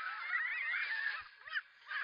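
Cartoon soundtrack: a chorus of many high, wavering squawks and chattering creature calls, honk-like, overlapping, thinning out and fading past the middle.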